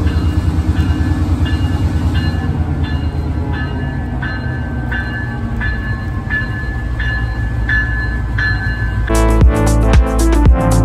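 Diesel locomotive passing close by, with a heavy engine and wheel rumble. From a second or two in, a short bright ringing note repeats about every three-quarters of a second. Music comes back in near the end.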